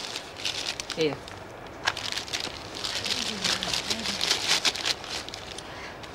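Wrapping paper crinkling and rustling in hands as a small gift is unwrapped.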